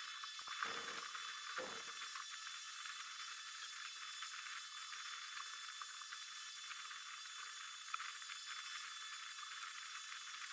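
Steady faint high hiss with a thin steady whine in it, and a few light clicks and taps from wires being handled at the stepper drivers in a CNC mill's electrical cabinet: a couple in the first two seconds and one about eight seconds in.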